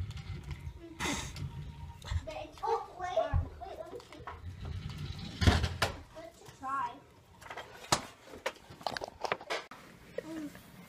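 Rubbing and knocking of a phone camera being handled against fabric, with a low rumble and several sharp knocks, while children's voices talk indistinctly in the room.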